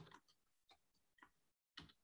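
Faint computer keyboard keystrokes: a few scattered, soft clicks in near silence.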